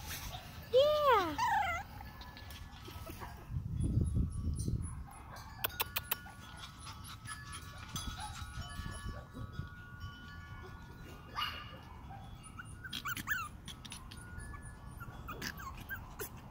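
Shih Tzu puppies yipping and whimpering as they play, with one louder yelp that rises and falls about a second in. There are a few low bumps and clicks along the way.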